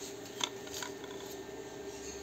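Light handling of the sewing machine's thread guides while threading: a sharp click about half a second in and a softer one shortly after, over a steady low hum.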